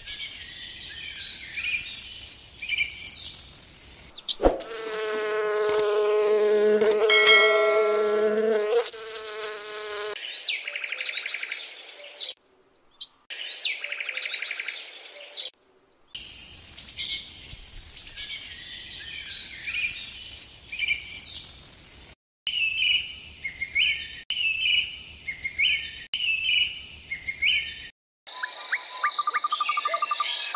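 A sequence of separately cut insect sounds: a buzz from about four to ten seconds in, between runs of high, repeated chirping.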